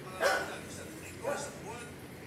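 A dog barks twice, about a second apart, the first bark the louder, over low background talk.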